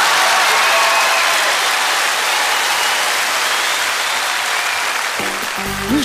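Studio audience applauding after a punchline, the applause slowly thinning; a short music cue comes in about five seconds in.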